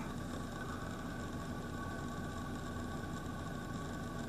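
A steady low hum with faint hiss and a few faint steady tones; there is no distinct event.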